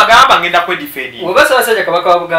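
Speech only: a man talking in conversation.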